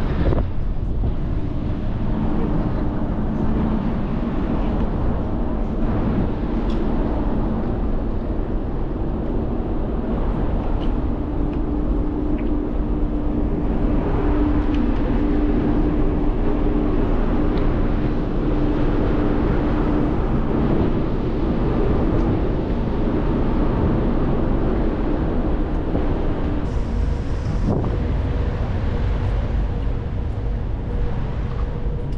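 Wind blowing over the microphone on a cruise ship's open deck at sea, over a steady low rumble from the ship, with a low mechanical hum from the ship's ventilation louvres that is strongest about halfway through.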